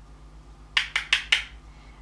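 Four quick light clicks of a blusher brush and makeup items being picked up and handled, bunched into about half a second near the middle.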